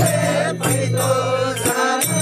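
A group of men chanting a traditional folk song together, accompanied by a hand drum and small hand cymbals that give a few sharp strokes.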